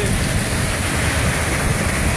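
Torrential rain pouring down, a loud, steady hiss with no break, with wind buffeting the microphone underneath it.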